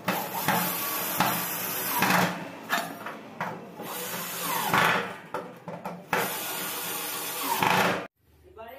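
Cordless drill working at a steel door hinge plate, its motor running in several bursts that stop and restart.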